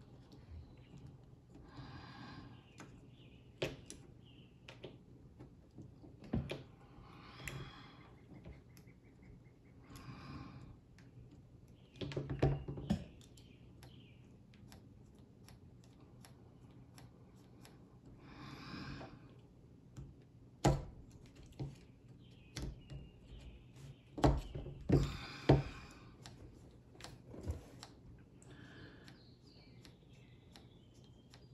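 Small parts of a Valken M17 paintball marker's trigger group (sear, spring and pins) clicking and tapping as they are handled and pressed into place by hand, in irregular light clicks with a few sharper ones in the second half.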